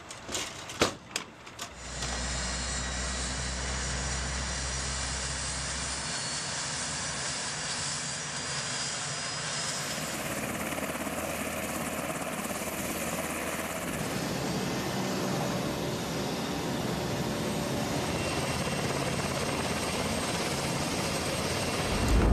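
A few knocks and clicks, then from about two seconds in a UH-60L Black Hawk helicopter running on the ground: a steady whine over rotor and engine noise, the sound shifting slightly a few times.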